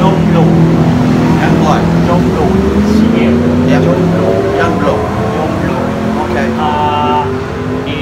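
A motor vehicle engine running, its pitch climbing slowly through the middle, with voices around it.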